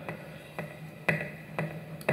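A steady beat of sharp percussive knocks, about two a second, kept going between rapped lines.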